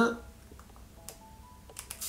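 A few light plastic clicks from a pump spray bottle of setting mist being handled and pressed near the end, running into the start of a short hiss of mist onto a makeup brush.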